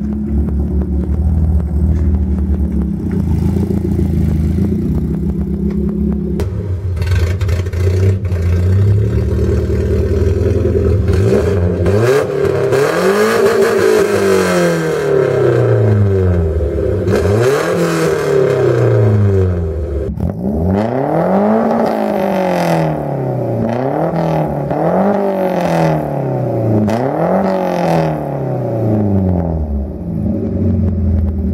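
A Volvo 740's four-cylinder engine, breathing through a side-exit exhaust, idles steadily, then is revved again and again from about halfway through, the pitch climbing and dropping back every couple of seconds.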